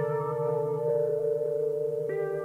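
Korg synthesizer playing a sustained chord of slowly shifting held notes over a low drone that pulses rapidly and evenly.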